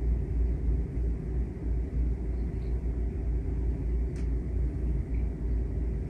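A steady low rumble, with a faint click about four seconds in.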